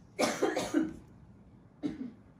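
A person coughing: a quick run of coughs in the first second, then one more short cough near the end.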